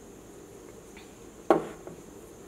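A single sharp clack about one and a half seconds in, as the plastic lid is set onto a small steel mixer-grinder jar, over a faint steady room hum.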